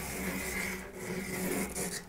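Green pastel stick scratching across textured pastel paper in long drawing strokes, with a short break about halfway.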